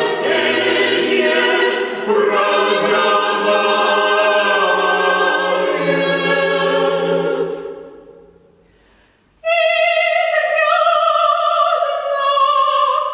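Mixed choir singing a cappella in many parts. The singing dies away about eight seconds in, followed by a brief pause, and then a high voice enters holding long notes with vibrato.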